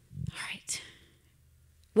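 A woman's soft, breathy, whisper-like vocal sounds close to a handheld microphone, then about a second of near quiet.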